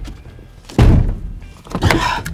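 Two heavy thuds about a second apart, a gloved hand banging on the inside of a pickup truck's cab.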